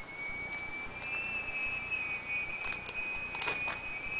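A thin, steady high-pitched whine that rises slightly in pitch about a second in, with a few faint clicks and a short rustle near the end from the plastic binder pages being handled.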